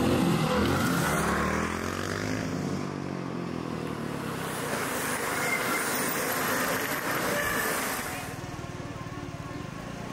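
A dirt motorcycle rides past, its engine note bending and falling over the first few seconds. Then a steady hiss as the pack of mountain bikes rolls by, fading near the end.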